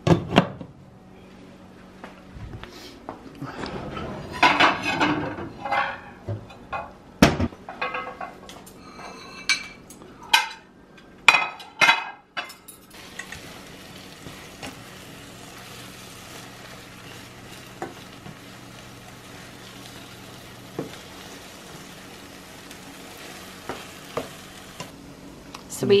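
Scrambled eggs and ground beef frying in beef tallow in a skillet. For the first dozen seconds there are scattered knocks and clatter from the pan's glass lid and utensils, and after that a steady sizzle.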